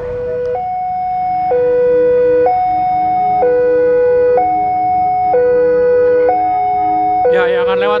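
Railway level-crossing warning alarm sounding an electronic two-tone signal, alternating a lower and a higher note about once a second, the warning that a train is approaching the crossing.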